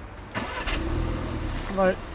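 Audi A1's 1.4 TFSI turbocharged four-cylinder petrol engine starting, heard from inside the cabin: a short crank about half a second in, then it catches, swells in revs and settles to idle.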